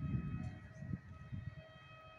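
Wind buffeting the microphone in gusts that die down over the two seconds. Under it, from about a third of a second in, a faint, steady distant tone with overtones sounds on and off, like a far-off siren.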